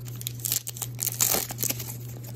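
Plastic wrapper of a Topps Allen & Ginter trading-card pack crinkling and tearing as it is ripped open by hand, a dense run of sharp crackles.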